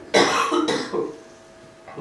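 A man coughing, then clearing his throat, two harsh bursts within the first second.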